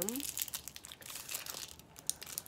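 Packaging crinkling and rustling in the hands as a makeup eye brush is taken out of its case: a dense run of small crackles.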